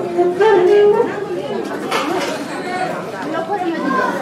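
Several people talking over one another in a hall, with one close voice loudest in the first second or so.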